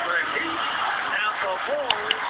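TV commentators talking and laughing over steady arena crowd noise, heard through a low-quality broadcast recording; a sharp click near the end.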